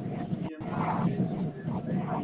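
A preacher speaking in a loud, raised voice.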